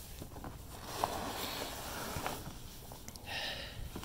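Foam packing peanuts rustling and shifting in a cardboard box as hands dig through them, with small clicks and a louder patch of rustling about three seconds in. Wind rumbles on the microphone underneath.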